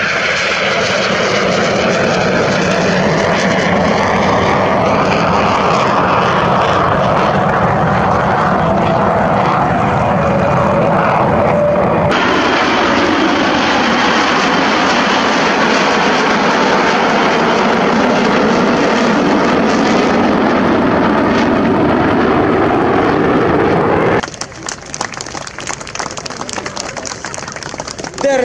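Aermacchi MB-339 jet trainers of an aerobatic formation flying by: loud, steady jet noise. The sound changes abruptly about halfway through and drops much quieter a few seconds before the end.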